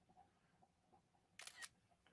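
Near silence, broken about one and a half seconds in by a brief camera-shutter click from a phone taking a screenshot.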